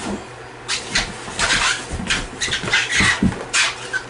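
Scuffling of a grappling struggle as a man is taken down to the floor: irregular shuffles and rustles with several dull thumps, mixed with heavy breaths.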